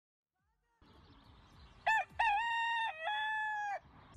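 A rooster crowing once, a long call in several parts about halfway through, over faint background noise.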